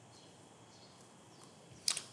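Near silence: faint room hiss, broken near the end by a brief sharp mouth sound just before speech resumes.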